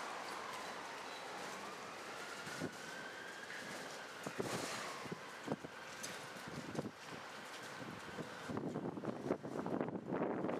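A hand pallet truck carrying a caged IBC tote is pulled over a rough concrete yard. Scattered knocks and rattles begin about four seconds in and grow denser and louder near the end. Under them is steady outdoor background noise, with a faint whine that rises and falls in pitch over the first half.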